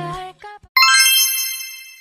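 Background music stops, then a single bright chime sound effect rings out sharply and fades away over about a second and a half.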